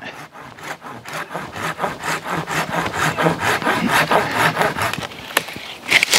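Silky Gomboy folding pruning saw, lashed to the top of a wooden hiking staff, cutting through a small overhead tree branch in rapid back-and-forth rasping strokes. A single sharp crack comes near the end.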